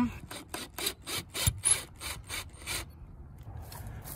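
Ryobi cordless impact driver running in reverse, backing a wood screw out of a fence picket. It makes an even run of sharp raps, about six a second, that stops near three seconds in.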